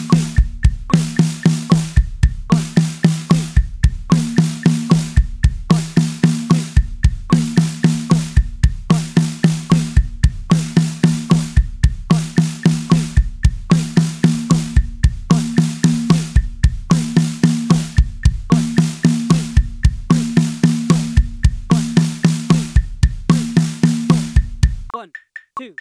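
Drum kit played in a steady loop: four single strokes on the snare drum, right-left-right-left, then two bass drum strokes, the six-note group repeated evenly over and over at a slow metronome tempo.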